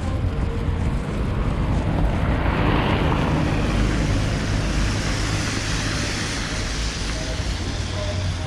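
Wind rumbling on the microphone of a moving camera, with the hiss of tyres on a wet road that swells through the middle and fades near the end.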